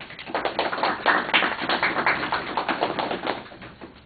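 A small audience clapping, starting a moment in, thick for about three seconds and thinning out near the end.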